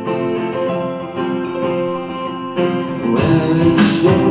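Live band playing an instrumental intro with acoustic guitar and keyboard notes. The music grows fuller and louder about three seconds in as more of the band comes in.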